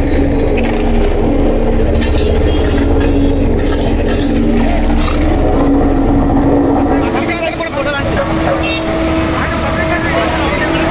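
An engine running steadily under crowd voices; about seven seconds in its note changes and settles higher.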